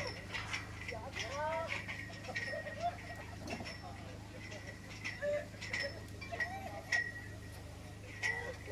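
Voices of people calling out in short, rising-and-falling cries, over a steady low hum, with light sharp clicks scattered through.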